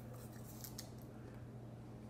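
Crisp crunching of a bite of apple being taken and chewed, a few sharp crunches in the first second that then die down, over a steady low hum.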